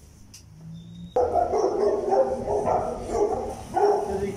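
A dog whining and yelping over and over, loud and pitched, starting abruptly about a second in.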